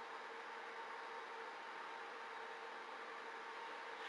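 Steady hiss with a faint, even hum underneath and no distinct sounds standing out: the background noise of a zoo webcam's audio feed.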